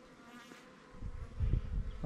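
Honey bees buzzing close by at a wild nest in a ground hole, the buzz faint and steady in the first second. In the second half, louder low rumbling thuds from handling near the microphone.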